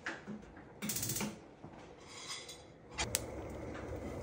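Skillet set on a gas stove and the burner lit: a brief clatter about a second in, a sharp igniter click just after three seconds, then the steady hiss of the gas flame.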